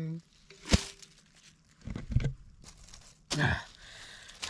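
Handling sounds of a metal cooking pot being tipped out and set down upside down on a bed of dry leaves: a sharp click, then a few dull thumps with leaf rustling.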